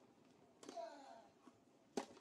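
Quiet tennis court with a brief faint voice just over half a second in, then the single sharp pop of a racket hitting a tennis ball right at the end.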